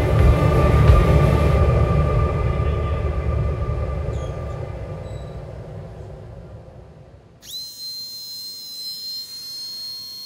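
A deep rumbling sound fades away over about seven seconds. Then a small high-speed hand tool starts with a quick rising whine and holds a steady high pitch.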